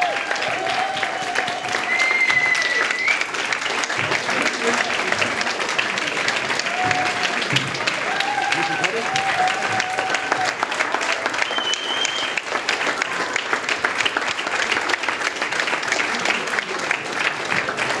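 Audience applauding steadily for the whole stretch, with a few voices calling out over the clapping.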